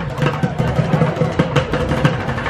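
Street bucket drumming: sticks beating upturned plastic buckets in quick, uneven strokes, over a steady low street rumble.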